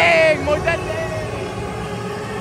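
A man's excited shout into the camera, loud and high-pitched, lasting about a third of a second, followed by a few short vocal sounds. Underneath is the steady din of a packed stadium crowd.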